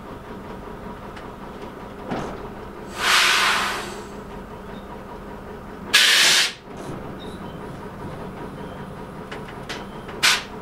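Train cab with a steady engine drone underneath and two loud bursts of compressed air hissing out: one about three seconds in that fades over a second, and a shorter one about six seconds in that cuts off sharply, as from the brake valve. A small knock comes just before the first hiss.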